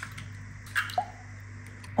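Eggs being cracked and opened by hand over a bowl of liquid: a short sharp crack of shell at the start, then soft wet plops as the egg drops into the oil mixture about a second in.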